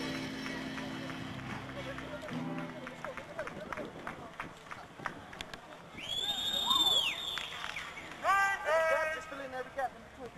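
A group of football players shouting and whooping as they walk onto the field, with many sharp clicks and claps. There is one long high call about six seconds in, then a quick run of short rising shouts near the end.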